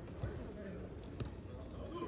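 A football being kicked on an artificial-turf pitch: two sharp thuds about a second apart, over faint shouting voices of players.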